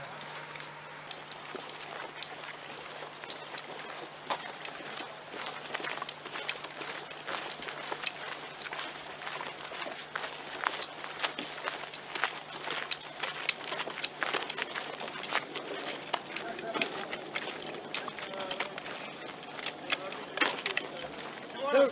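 Footsteps and the rattle and knock of carried kit as a file of soldiers moves quickly on foot over dirt, the camera jostled among them. Muffled men's voices come in near the end.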